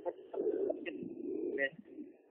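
A bird cooing low in the background.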